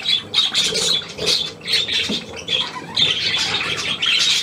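A flock of budgerigars chirping and chattering, a dense run of short, high calls overlapping one another.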